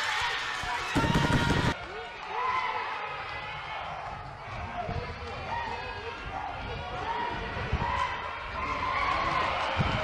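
Raised, excited voices over a fight crowd, with a loud burst of noise about a second in that cuts off abruptly and a few dull thumps later on.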